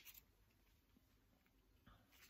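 Near silence: room tone with faint handling noise as a skein of yarn is picked up, a small click at the start and another near the end.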